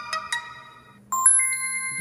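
Cosmote Xceed smartphone playing notification chimes: a run of bell-like notes fading out, then about a second in a bright three-note chime stepping up in pitch that rings on. It is the alert for an incoming text message as the unlocked phone registers on the new network.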